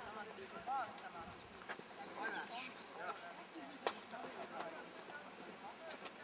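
Faint, scattered voices of people talking around the track, with one sharp click a little past the middle.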